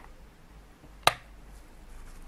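A single sharp click about a second in, a rocker switch on a power strip being flipped.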